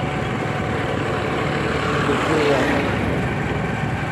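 Steady motorcycle riding noise: the engine running and wind rushing over the microphone, as one even haze at constant level.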